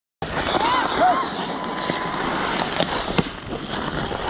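Ice hockey play: skates scraping on outdoor rink ice, sharp clacks of sticks and puck, and players' short shouts. It cuts in suddenly just after the start.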